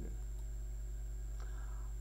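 Pause in speech: a steady low electrical hum with a faint high-pitched whine underneath, and one faint click about one and a half seconds in.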